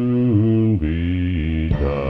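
Southern gospel male vocal quartet singing held chords in close harmony over a low bass voice, the chord stepping to new pitches several times. A fuller, louder chord comes in near the end.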